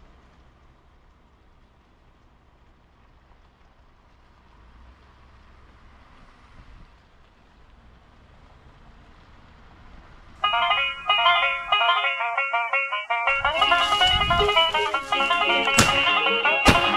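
Faint steady hiss, then about ten seconds in a bluegrass recording starts loud with a banjo picking quick runs of notes. A few seconds later lower instruments join it.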